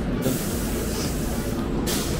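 A long hiss of compressed air from a stopped electric commuter train, cutting off sharply near the end, over the train's low rumble. It is the air release that comes just before the doors open.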